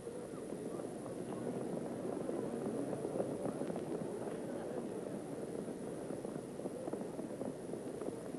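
Racetrack sound during a harness-race post parade: hoofbeats of harness horses on the track under a steady hubbub of crowd noise.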